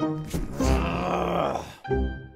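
Cartoon soundtrack music, with a drawn-out rough sound effect over it from about half a second in until near the end.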